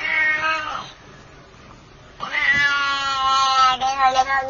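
A cat meowing twice: a short call, then after a pause of about a second a longer, drawn-out one.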